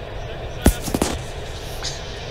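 A sharp smack about two-thirds of a second in, then two quicker, softer knocks, over a steady low background hum.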